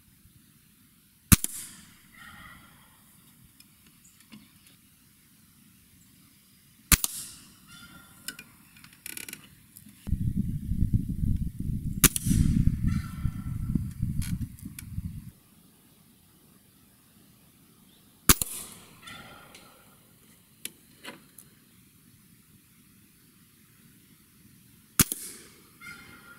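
Five shots from a Gamo Swarm Magnum .22 gas-piston break-barrel air rifle, each a sharp crack, about five to six seconds apart, with softer clicks and knocks after each one. A low rumble runs for about five seconds in the middle, around the third shot.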